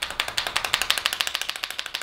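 Mascara tube being shaken hard, rattling in a fast, even run of clicks.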